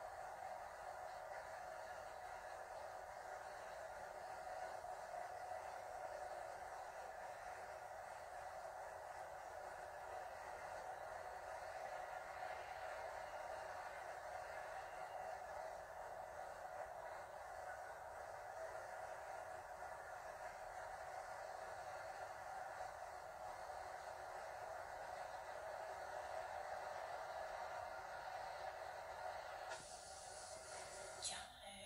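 Faint, steady background hiss with no distinct events: room tone.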